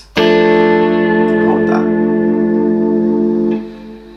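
A PRS electric guitar sounding one three-note chord on the D, G and B strings (D string third fret, G second fret, B third fret), plucked together once and left ringing steadily. It is cut short about three and a half seconds in.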